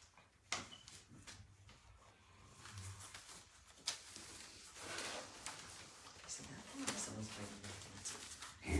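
Puppies moving about on wrapping paper spread on the floor: scattered sharp clicks and rustling, with a short low vocal sound about seven seconds in.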